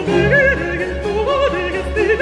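Countertenor singing a Baroque opera aria, holding notes with a wide vibrato, over a string orchestra on period instruments.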